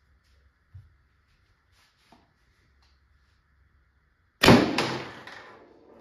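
A single shot from a CO2-powered Tippmann TiPX pistol about four and a half seconds in: a sudden sharp report that fades over about a second and a half. The chronograph reads this shot as still low in velocity.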